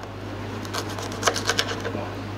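Knife blade cutting through a red-eye sardine's head behind the eye on a plastic cutting board. It makes a quick, irregular run of small clicks and crackles as it cuts through the bone, starting under a second in.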